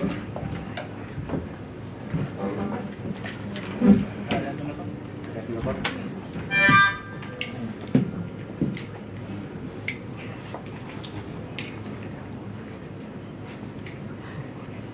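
Acoustic guitar being retuned to an open tuning: single strings plucked and left to ring, a few notes at a time. About seven seconds in, a short loud harmonica note sounds.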